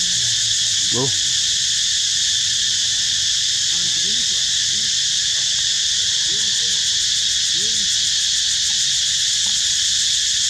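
Loud, steady, high-pitched chorus of insects shrilling without a break. Beneath it are a few faint, short rising-and-falling calls, one about a second in and several between about four and eight seconds.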